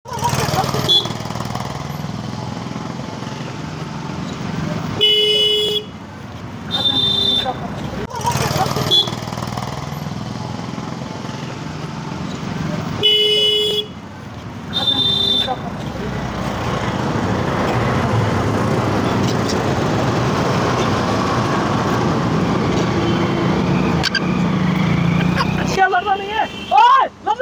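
Steady outdoor background noise with indistinct voices, broken by short vehicle horn toots about five and seven seconds in, with the same toots coming again about eight seconds later. Near the end the background grows louder and denser.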